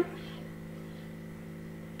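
A steady low hum of background room noise, unchanging, with no other sound standing out.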